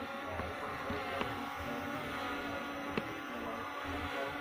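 S1S toy quadcopter drone hovering low, its propellers giving a steady buzz whose pitch shifts slightly.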